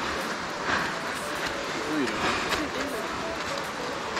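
Faint voices of hikers talking off-mic over a steady hiss, with footsteps about every half second on a snowy, muddy trail.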